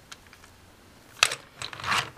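A plastic Transformers Lockdown toy car being handled and turned on a countertop: quiet at first, then a sharp plastic click a little over a second in, followed by a few lighter clicks and rustles.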